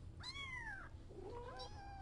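Newborn kitten crying while being handled to have a collar put on: one high cry that rises and falls about a quarter second in, then a fainter, shorter cry near the end.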